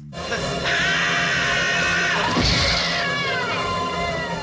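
A woman's long high-pitched scream, falling away near the end, over music.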